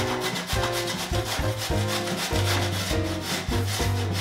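A carrot being grated on the coarse side of a stainless steel box grater, with quick, evenly repeated rasping strokes. Background music plays underneath.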